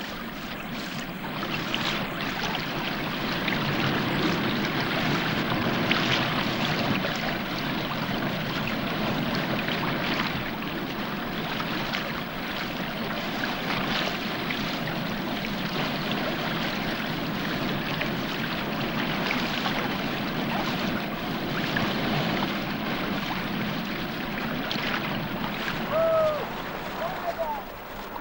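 Tidal water washing and rushing over mudflats as the flood tide comes into the river estuary: a steady wash of moving water.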